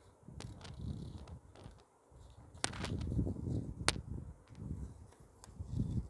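Hands folding and creasing a sheet of origami paper on a board: repeated rubbing and scraping as the folds are pressed down, with two sharp clicks near the middle.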